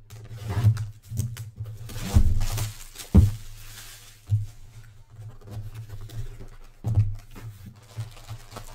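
Cardboard trading-card hobby box being handled and opened by hand: about five knocks and thumps of the box, with a sliding scrape of cardboard around two seconds in.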